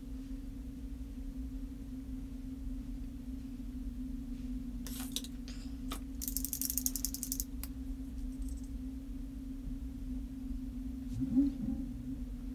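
A steady low hum throughout, with a few soft clicks about five seconds in and a brief rapid rattle of fine ticks from about six to seven and a half seconds in.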